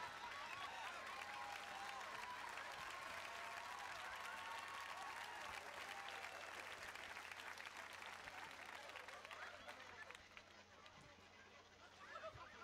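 Studio audience applauding, with some voices mixed in; the applause dies down near the end.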